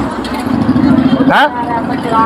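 A motor vehicle engine running steadily nearby with street noise, breaking off suddenly about one and a half seconds in.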